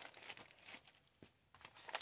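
Faint rustling of paper being handled: old trading-card wrappers and a paper sewing pattern shuffled on a table, a few soft crinkles and taps, the sharpest one near the end.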